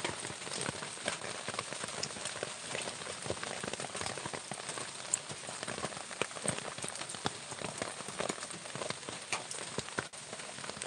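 Steady rain falling, a dense, even patter of many small drop hits.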